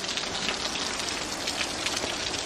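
Steady, irregular patter of water dripping from a wet rock overhang.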